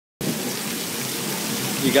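Rain falling steadily, an even hiss of a heavy downpour, after a moment of total silence at the very start.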